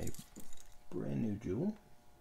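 A short stretch of low, unclear voice, with a few light clicks in the first half second.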